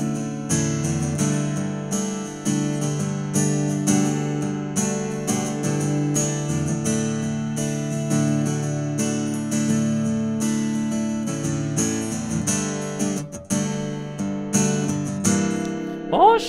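Cort Gold-Edge LE acoustic guitar strummed in a steady rhythm of chords, heard through its pickup and an AER acoustic amplifier. The tone is 'refreshing' (시원하네).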